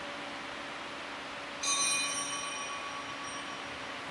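A small altar bell is struck once about one and a half seconds in. It rings with several high, clear tones that fade over about two seconds, over a steady hiss of room noise.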